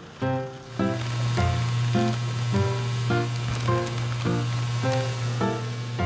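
A chili pepper washing machine running: a steady motor hum with a continuous hiss of spraying water, starting under a second in. Background music with short, evenly spaced notes plays over it.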